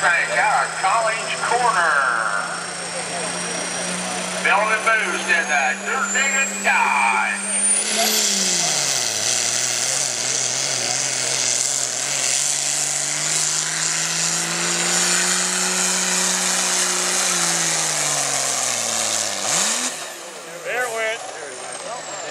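Dodge Ram's Cummins turbo-diesel pulling a sled. The engine holds a steady pitch while a high turbo whistle climbs, then about eight seconds in the engine pitch drops as it takes the load. It labors at lower revs, slowly rising, and winds down near the end.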